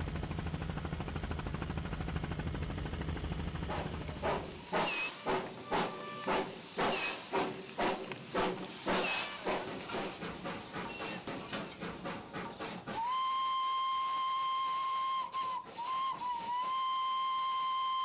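A steady low engine drone for the first few seconds, then a small coal-fired steam locomotive of the Darjeeling Himalayan Railway working: a run of sharp steam chuffs, about two a second. After that its steam whistle sounds one long steady note that wavers briefly in the middle and carries on past the end.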